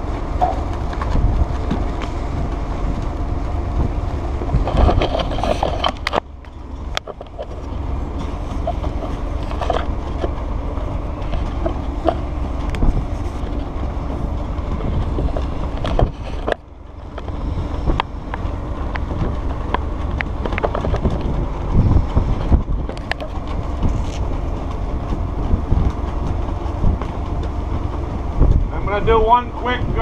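Wind buffeting the microphone on the open deck of a ship under way, over a steady low rumble from the ship. The sound drops briefly about six seconds in and again near the middle.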